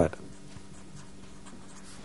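Marker pen scratching on paper as a word is handwritten, faint, over a steady low hum.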